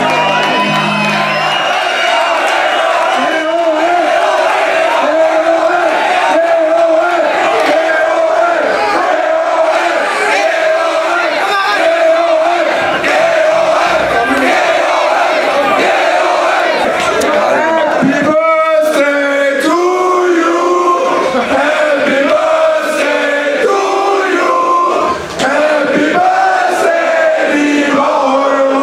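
A large crowd singing together, led by a man on a stage microphone: a birthday serenade.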